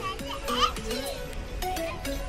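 A young child's high-pitched voice, with the loudest cry just after half a second in, over background music with steady held notes.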